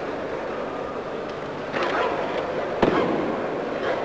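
Arena crowd murmur with sudden sharp sounds from the movements of a karate team performing a kata in unison: a burst just under two seconds in and a louder crack just before three seconds in.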